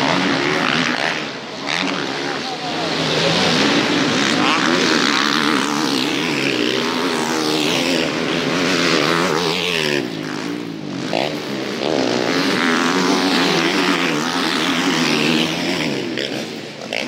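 Motocross bike engines revving as riders race past on a dirt track, several engines at once, their pitch rising and falling.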